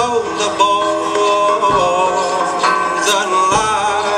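Live folk music: a trumpet playing a held, wavering melody over a band accompaniment in a traditional English folk song.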